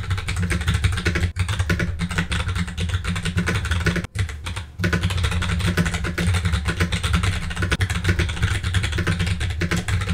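Fast typing on a computer keyboard: a dense run of key clicks with short pauses about a second and four seconds in.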